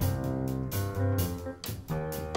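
Jazz piano trio playing: acoustic piano, double bass and drum kit together, the bass moving note to note underneath while cymbal strokes land about twice a second.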